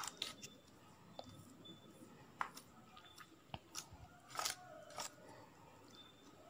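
Faint, scattered scrapes and clicks of a plastic spoon pressing chopped nuts into a soft slab of mango burfi in a butter-paper-lined pan.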